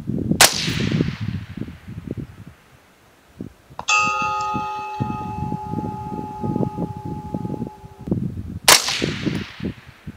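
A suppressed .223 rifle fires about half a second in. About three and a half seconds later a steel target 1200 yards away rings for about four seconds, picked up by a target camera, and a second shot follows near the end. Wind rumbles on the microphone throughout.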